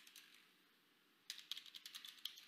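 Faint typing on a computer keyboard: a few keystrokes at the start, then a quick run of keystrokes from a little past halfway.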